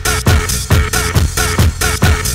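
Electronic club dance music from a 1990s Spanish DJ session tape: a steady four-on-the-floor kick drum about twice a second under a repeating synth riff and hi-hats.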